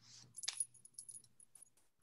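Faint handling noise over a Zoom microphone: a quick, irregular run of small clicks and clinks, like small hard objects being moved about, over a faint low hum.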